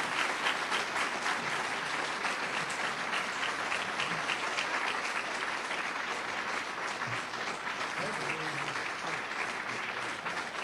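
An audience applauding: many hands clapping in a dense, steady round, easing a little in the second half.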